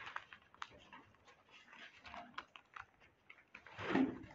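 Bible pages being turned: faint, scattered soft clicks and rustles, with one louder brief noise at the very end.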